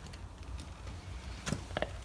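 Quiet workshop room tone with a steady low hum, and a few faint clicks about one and a half seconds in and near the end.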